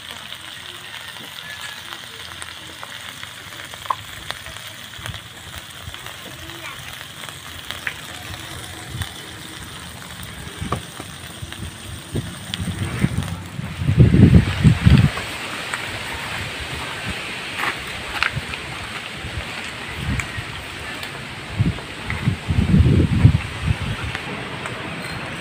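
Crabs sizzling in hot oil in a wok, a steady hiss with scattered small crackles and clicks, stronger in the second half. Two bouts of heavy low rumbling, about halfway through and again near the end, are the loudest sounds.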